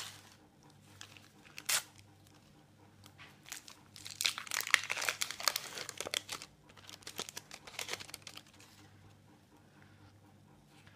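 A Panini sticker packet being torn open by hand, the wrapper crinkling and tearing. One sharp crackle comes first, then about four seconds in a dense burst of crinkling and tearing that thins out over the next few seconds.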